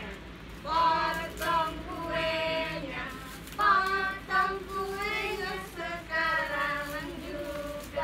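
A girl and women singing a birthday song together, unaccompanied, in phrases with held notes.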